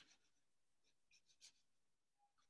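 Near silence with a few faint, short scratches of a paintbrush on watercolour paper, one at the start and a cluster about a second in.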